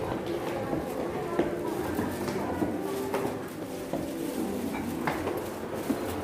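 Footsteps going down hard stairs, a scattered series of light steps, over indistinct background voices.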